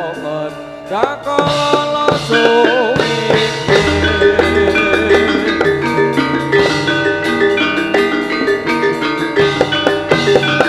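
Javanese gamelan playing: bronze-keyed sarons struck with wooden mallets in quick repeated notes over gongs and drums. The music thins briefly in the first second, then the full ensemble comes back in.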